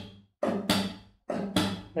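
Nylon-string classical guitar played in a flamenco-style rhythm, twice over: a first stroke (the kick), then about a third of a second later an upstroke with a percussive slap on the strings, each pair ringing out.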